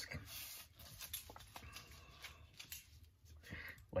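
Faint rustling, rubbing and a few light taps as a dust mask is handled and pulled on over the face.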